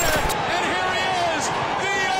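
A dense mix of overlapping voices and gliding tones, with a few sharp knocks.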